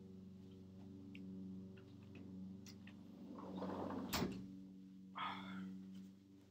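A steady low hum with a few faint clicks, a sharper click about four seconds in and a brief breathy rush about a second later.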